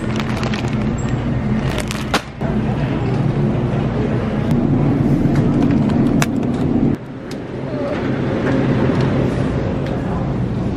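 Shopping cart rolling and rattling over a hard store floor, over a steady low hum. The sound drops off abruptly twice, once about two seconds in and again near seven seconds.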